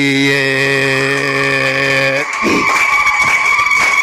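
A man chanting into a handheld microphone, holding one long, steady low note for about two seconds. Then the voice gives way to a high, steady, slightly wavering tone.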